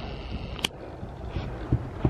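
Low rumbling handling noise on the camera's microphone, with one sharp click about two-thirds of a second in and a few soft thuds later on.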